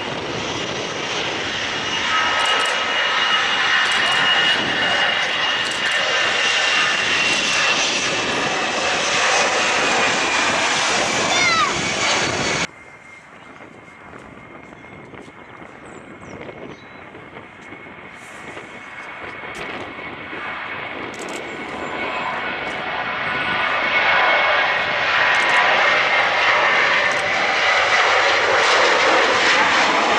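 Jet airliner engines at takeoff power: an Airbus A319 runs loud with a steady high whine that sinks slightly in pitch, and cuts off suddenly about twelve seconds in. A Boeing 737-800's CFM56 engines then start much fainter and swell steadily louder as it accelerates down the runway and lifts off.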